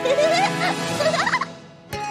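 Wordless cartoon vocal cries that swoop up and down in pitch, over background music. They fade out about a second and a half in, and a short click comes just before the end.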